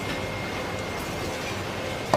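Steady market-stall background noise with a constant machine hum, and a faint click of a knife working through a large fish about a second in.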